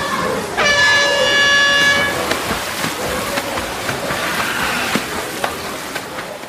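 A horn sounds once, a steady pitched tone lasting about a second and a half, starting about half a second in. It sits over a constant noisy background with a few sharp clicks later on.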